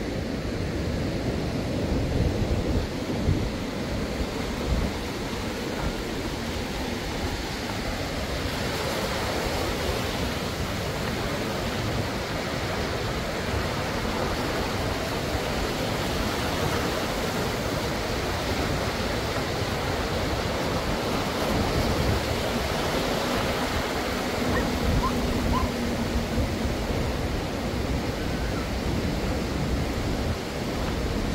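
Sea surf breaking and washing up a sandy beach, swelling and easing, with wind rumbling on the microphone.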